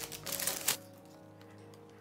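Packaging crinkling and clicking as a skincare product's box is opened by hand, ending with a short sharp snap under a second in. Then only faint background music with held notes.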